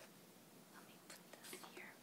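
Near silence: the room tone of a conference hall, with a few faint rustles and clicks.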